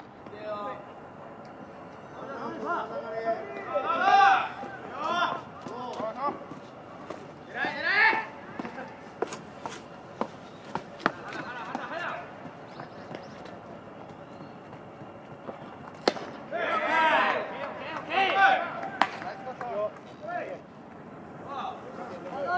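Voices calling out in loud bursts around a baseball game, about four, eight and seventeen seconds in. Between the bursts come scattered sharp clicks, with a louder crack about sixteen seconds in.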